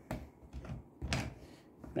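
A few light knocks and clicks from hands handling a cut-open metal oil filter canister in its cutting jig.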